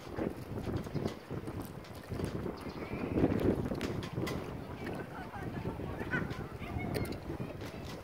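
Wind buffeting the microphone over open water: a steady low rush that swells to its loudest about three seconds in, with faint voices in the background.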